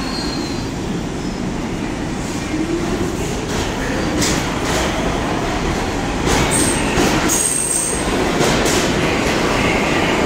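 New York City subway train running at the platform, with a whine that rises in pitch, rattling wheels over the rails, and brief high wheel squeals about two-thirds of the way through.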